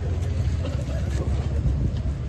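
A steady low rumble of outdoor noise on a handheld microphone, with faint crowd voices in the background.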